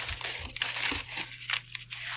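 Paper crinkling and rustling as a crumpled sheet is pushed in among split logs in a wood stove's firebox, with a few dull knocks.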